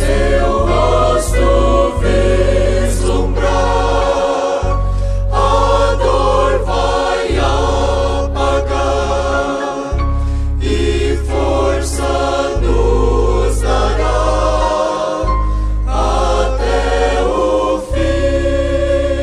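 Choral gospel music: a choir singing a hymn over long sustained bass notes that change every two or three seconds.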